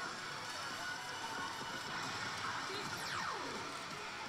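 Kakumeiki Valvrave pachislot machine playing its music and sound effects over the steady noisy din of a pachinko hall, with a falling swoosh effect about three seconds in as the machine launches an effect animation.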